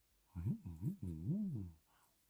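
Wordless voiced moans with a rising-then-falling pitch: three short ones, then a longer one about a second in.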